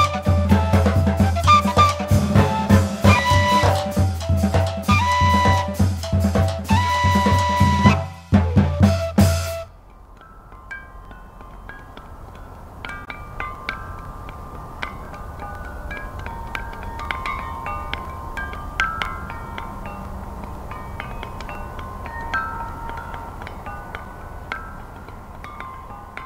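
Drum kit playing a fast Colombian puya rhythm on snare and bass drum, with gaita flutes holding melody notes above it, cutting off suddenly about ten seconds in. A quieter passage follows: marimba playing short, sparse notes over a soft background hiss.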